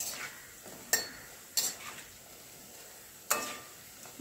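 Metal slotted spoon clinking and scraping against a kadhai as besan pakoras are turned in hot oil, with four sharp clinks over a faint, steady sizzle of frying.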